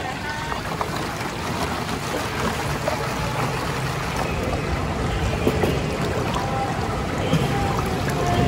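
Water running steadily through a shallow gem-panning trough as wooden sieve boxes are shaken in it, with a few light knocks of the wooden sieves.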